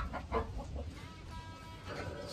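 Domestic fowl clucking: two short calls near the start, followed by a faint steady tone in the second half.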